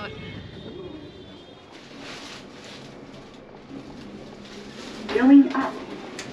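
Low, steady background noise with a brief voice sound a little after five seconds in.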